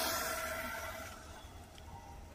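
Homemade electric bicycle with a 775 DC motor moving away after passing by, its motor and tyre noise fading steadily.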